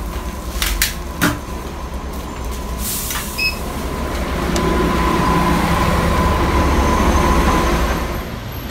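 Street traffic with a large vehicle's engine running close by, growing louder through the second half. A few sharp knocks and rustles of handling come in the first few seconds.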